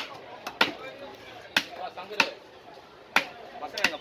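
A heavy fish-cutting knife chopping down through fish onto a wooden chopping block: several sharp knocks at irregular intervals.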